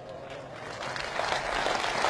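Audience applauding, starting faintly and growing louder.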